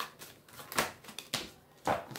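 A few short, sharp clicks or taps, four in two seconds, the loudest near the end.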